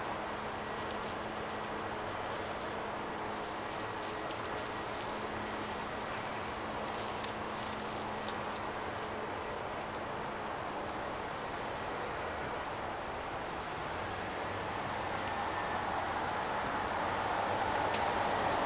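Steady outdoor background noise with a faint low hum for the first half, and a few light rustles and small twig clicks as a long-haired cat moves through the branches of a jasmine bush.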